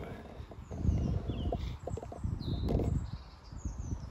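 Birds chirping, several short high calls scattered through a few seconds, over a low, uneven rumble on the microphone.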